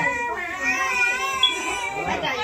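A baby crying in one long held wail, with other voices over it.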